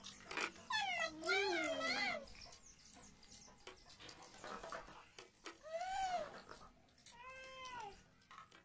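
A cat meowing several times: a long wavering call near the start, then two shorter meows later that rise and fall in pitch.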